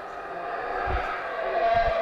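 Yucatán black howler monkeys roaring in a sustained chorus, with two low thumps about a second in and near the end.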